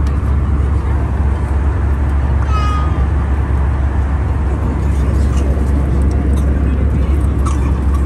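Steady airliner cabin noise in flight, a loud low drone, picked up by a phone. A short high-pitched cry comes about two and a half seconds in, with a few faint clicks later.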